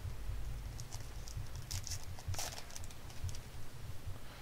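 Baseball trading cards being handled and slid against one another, a run of soft clicks and rustles from about a second in until near the end.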